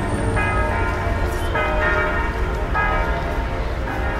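Church bells ringing from the tower, with a fresh strike about every second and a quarter, each tone ringing on into the next.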